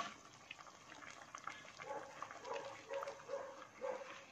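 Faint short animal calls, four or five in quick succession in the second half.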